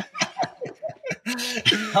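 Two men laughing together in short, choppy bursts of laughter.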